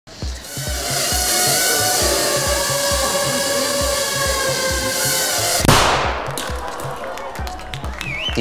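Dramatic music with a steady low pulsing beat, about two a second, under a bright hissing wash. About five and a half seconds in, a single sharp bang, the small explosive charge of a mini drone striking a mannequin's head, cuts the wash off, and a few clicks follow.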